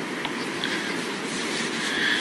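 Steady background noise of a recorded conversation in a pause between speech, an even rumble and hiss with no clear tone or rhythm.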